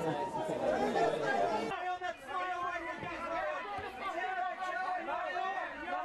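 Indistinct chatter of several people talking at once. About two seconds in the background hiss drops abruptly and a few voices stand out more clearly.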